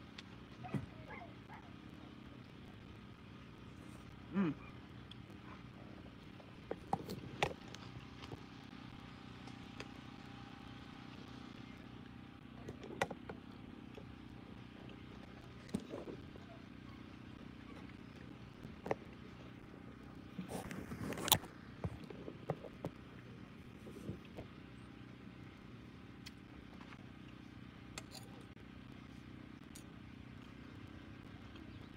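Quiet eating sounds: a fork clicking against a plate now and then, with a short hummed voice sound about four seconds in and a louder run of clicks about twenty-one seconds in, over a steady low hum.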